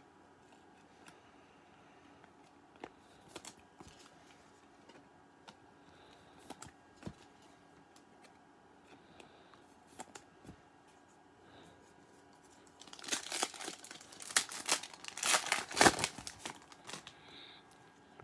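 A 2020-21 NBA Hoops hobby pack wrapper being torn open and crinkled, a dense crackling run of about four seconds that starts about thirteen seconds in. Before that there are only a few faint clicks of cards being handled.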